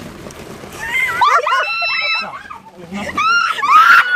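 High-pitched voices shrieking and squealing in two stretches, about a second in and again near the end, with no clear words.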